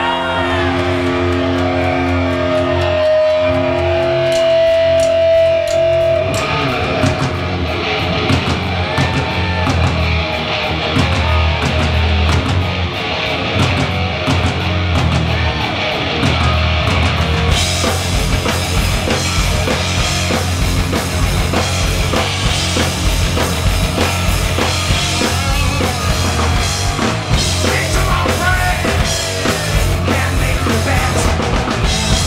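Live hard rock band playing: electric guitar, bass and drum kit. It opens on held, sustained guitar notes, the full band comes in about six seconds in, and the cymbals get busier just past halfway.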